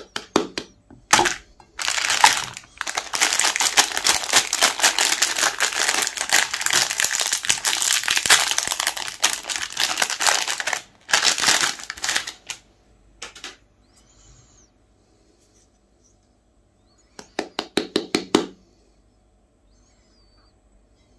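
Ice-cream bar wrapper crinkling and crumpling in the hands: a few short bursts, then a long unbroken stretch of crinkling for about eight seconds, more bursts, a quiet pause, and one more short burst near the end.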